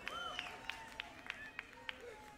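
Quiet live-concert room sound between songs: a run of light, sharp ticks about three a second, with a few short rise-and-fall calls from the audience.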